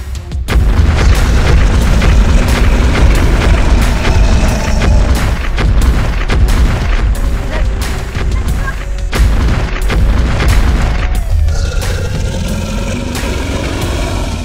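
Dramatic film soundtrack: music layered with heavy booming thuds that come in a steady beat of about two a second.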